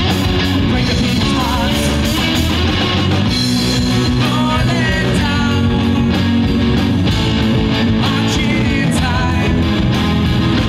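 Live rock band playing through a PA: electric guitar, electric bass and drum kit in a steady, continuous groove.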